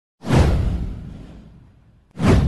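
An intro whoosh sound effect with a low rumble under it: it swells up suddenly about a quarter second in, then fades away over more than a second.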